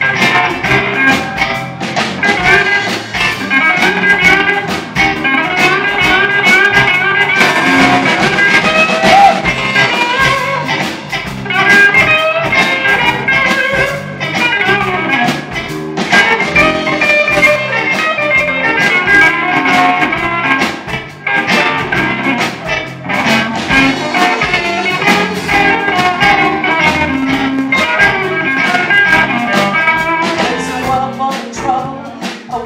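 Live blues band playing an instrumental stretch: a Les Paul-style electric guitar takes a lead solo over drums.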